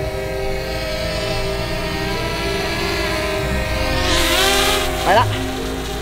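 Small quadcopter drone flying close overhead, its propellers giving a steady whine of several pitches at once. About four seconds in the sound swells into a rushing surge as the drone speeds up and climbs away.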